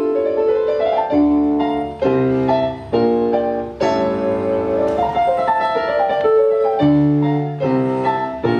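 Digital keyboard played with a piano sound: a rising run of notes at the start, then full chords struck in quick succession, changing roughly once a second.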